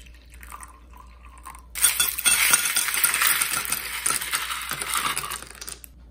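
Water pouring faintly into a glass mug, then a little under two seconds in, a loud run of clinking as ice cubes knock against the glass, lasting about four seconds and cutting off suddenly.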